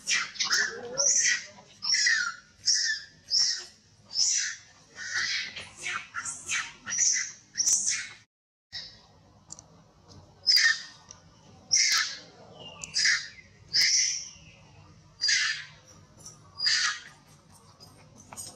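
Baby macaque giving shrill, high-pitched distress screams, one after another about once a second, while an adult macaque holds it down. The cries stop dead for a moment about eight seconds in, then resume.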